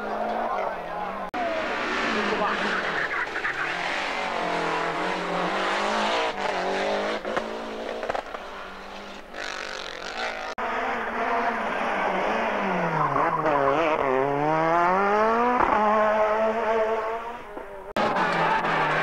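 Lancia Delta Group A rally car's turbocharged four-cylinder engine revving hard, its pitch rising and falling through gear changes. Near the end it drops low, then climbs back up steeply. The sound jumps twice where clips are cut together.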